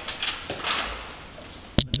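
Wallpaper rustling in short sweeps as a pasted length is smoothed and pushed into a wall corner, followed by two sharp clicks near the end.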